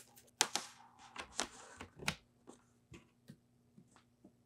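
Laptop power adapter and its cord being handled and plugged in: a rustle with several sharp clicks and knocks over the first two seconds, then a few faint taps.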